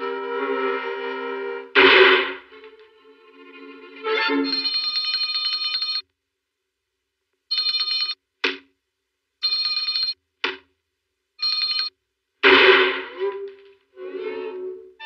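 Small handbell rung in four short bursts of steady, high ringing, each stopped abruptly, with silent gaps and two short sharp strokes between them. Orchestral cartoon music plays before the ringing, with loud hits about two seconds in and near the end.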